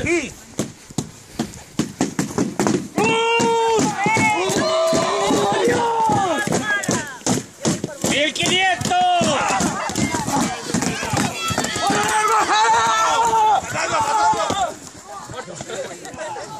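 Many people shouting and yelling at once in a mock melee, their cries rising and falling and overlapping. Through it runs a rapid scatter of sharp knocks of padded weapons striking shields. The shouting dies down near the end.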